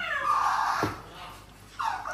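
A domestic cat's loud drawn-out meow, about a second long, falling in pitch.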